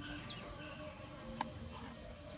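Faint insect buzzing, with one sharp click about one and a half seconds in.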